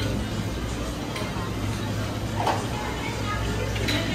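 Ice-cream shop ambience: a steady low hum under faint background voices and music, with a couple of light clicks of metal spades working ice cream on the frozen stone slab.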